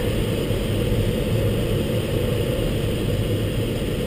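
Steady low rush of airflow over the canopy, heard inside the cockpit of a Schempp-Hirth Mini Nimbus sailplane as it slows toward a stall at about 30–35 knots.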